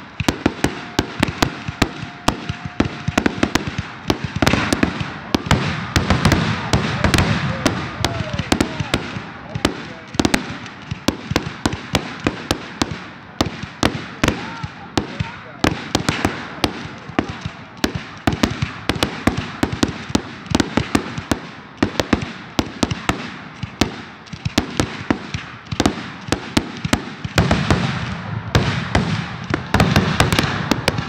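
Aerial fireworks shells bursting one after another in a dense, continuous run of bangs and crackles, with no pause between reports.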